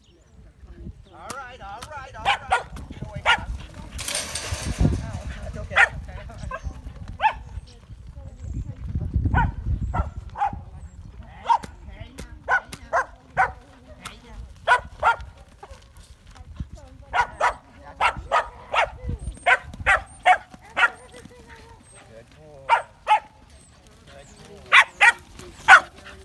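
Young herding dog barking repeatedly while working sheep: short, sharp barks in irregular runs of a few at a time.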